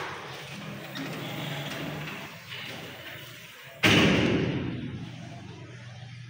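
A sudden loud bang about four seconds in that dies away over about a second, over a low steady hum.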